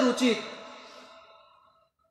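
A man's voice preaching ends a phrase within the first half second, and its sound trails off over about a second and a half into silence.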